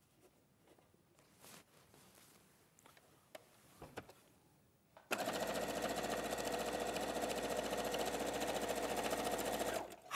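Domestic electric sewing machine stitching a seam at a steady speed, starting about halfway in and stopping just before the end. Before it, a few faint clicks as the fabric is positioned under the foot.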